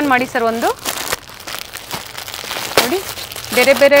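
Plastic packaging on wrapped kurti sets crinkling in scattered crackles as the packs are handled, between stretches of speech.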